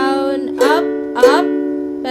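Ukulele strummed on a B minor 7 chord, with three strokes about two-thirds of a second apart and the chord ringing between them. These are the opening strokes of the down-down-up-up-up-down-up-down-up strumming pattern.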